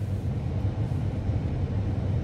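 Climate-control blower fan of a Toyota Estima Hybrid running steadily inside the cabin, a low whoosh, with the temperature set to 32.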